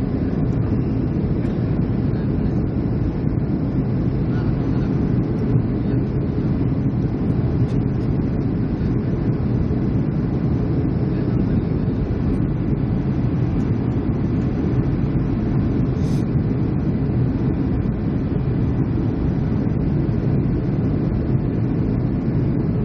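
Steady low rumble of engine and airflow noise heard inside a jet airliner's cabin on its descent, with the wing flaps extended.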